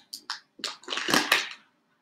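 Very sticky vinyl transfer tape being peeled back off vinyl lettering on a clear plastic box lid, in a series of short crackly tearing noises that stop near the end.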